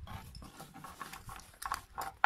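Handling of a canvas gas-mask bag: soft rustling with light clicks and knocks, a few louder rustles near the end.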